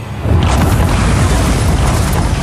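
A sudden deep boom about a third of a second in, running on as a loud, steady rumble: a thunder sound effect.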